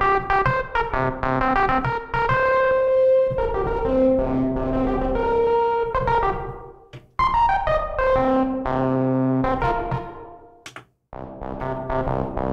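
Arturia MiniFreak synthesizer playing the 'Ermpet' patch, a broken-trumpet sound made to seem on worn-out tape. A macro is turned up to give it a plucky attack, so it sounds less like a trumpet and more like a key sound, somewhere between a trumpet rasp and a harpsichord. Notes and chords are played in three phrases with short breaks between them, some notes decaying quickly and a few held.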